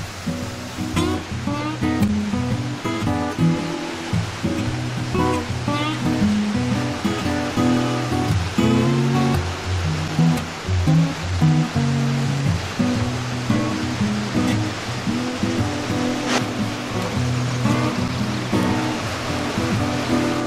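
Background music carried by plucked guitar notes and chords.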